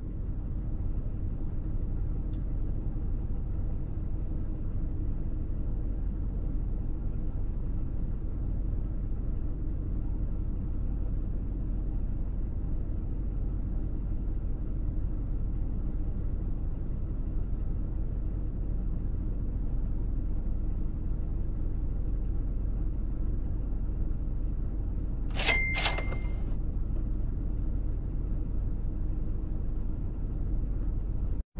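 Car engine idling steadily, a low rumble heard from inside the parked car's cabin. Near the end come two quick clicks with a brief high-pitched ring.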